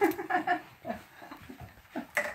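Children's voices: a few short, soft vocal sounds in the first half second, then only faint sounds until a brief sound just before the end.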